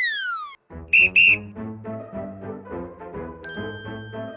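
Cartoon sound effects over light background music. A whistle glides down in pitch and stops. About a second in come two short, loud, shrill whistle toots, then a bouncy music bed with a steady beat, and a bright chime rings near the end.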